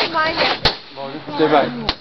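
People's voices calling and talking over each other. Two short, sharp knocks cut through them, about a third of the way in and again near the end.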